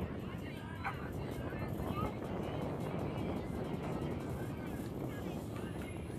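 Youth baseball players calling out in the distance, a few short shouts over steady outdoor rumble.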